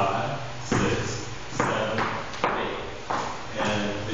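A man's wordless vocalizing in a regular rhythm, a fresh voiced syllable roughly every 0.8 s, ringing in a bare room, as he marks time while dancing salsa hip rolls.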